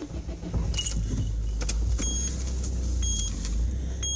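Car engine running with a steady low rumble, and a high electronic dashboard chime beeping about once a second in the second half.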